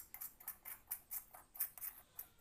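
A steel spoon scraping and clinking against the inside of a metal mixing bowl as leftover besan dough is gathered up. The scrapes and clinks come quickly, about five a second.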